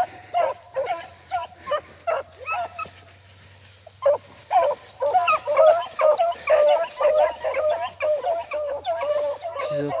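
Beagles baying while running a rabbit track: a rapid string of short barking calls, thinning to a lull about two and a half seconds in, then coming thick and fast from about four seconds on.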